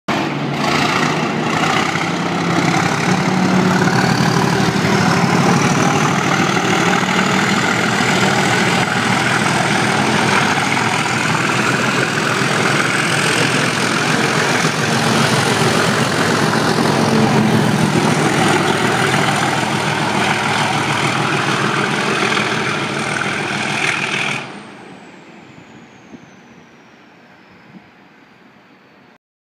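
Class 37 diesel locomotives (English Electric V12) under power passing close by, the engine noise loud and steady with a thin high turbocharger whistle over wheels running on the rails. The sound falls away sharply about 24 seconds in, leaving a faint high whine that drops in pitch.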